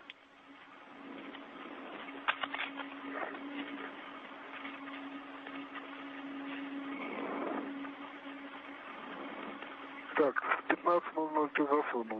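Spacewalk radio communication channel: a steady hiss with a low hum tone and a few clicks. Distorted radio voices come in near the end.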